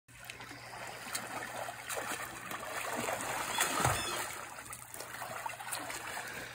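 Water splashing and churning in a swim spa as a swimmer swims freestyle against its current, a little louder around the middle, with a faint steady low hum under it.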